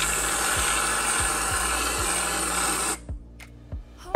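Aerosol can of whipped cream spraying: a loud, steady hiss for about three seconds that cuts off sharply. Background music plays underneath.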